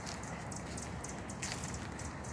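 Quiet outdoor background with a low rumble and faint rustling as the handheld phone moves along close to garden plants.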